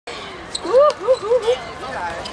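A high-pitched voice shouting four quick rising-and-falling syllables across the pitch, just after a single sharp knock of the football being struck.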